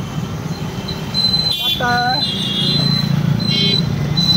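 Alfa three-wheeler auto-rickshaw running along the road, its engine hum and road noise heard from inside the open-sided passenger compartment. A sharp click comes about halfway through, followed by a brief call.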